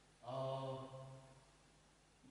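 A man's voice holding one drawn-out vowel at a steady pitch for about a second, like a hesitation 'eee', starting a quarter second in. Then it fades to quiet room tone.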